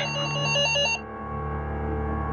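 Electronic doorbell trilling for about a second, then cutting off, over a steady background music drone.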